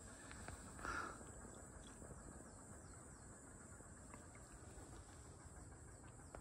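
Near silence in a forest: a faint, steady, high-pitched chirring of insects, with a soft rustle about a second in.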